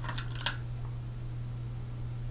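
A few faint, soft clicks and rustles in the first half second as quilt fabric pieces are handled and pinned, over a steady low hum.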